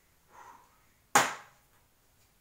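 A thrown ping-pong ball lands with one sharp knock about a second in, with a short ring-out in the garage.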